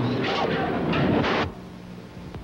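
Live television broadcast audio breaking up into loud, rough noise with broken voice fragments as the 1985 earthquake strikes the studio. It cuts off suddenly about a second and a half in, leaving only a low steady hum as the transmission is lost.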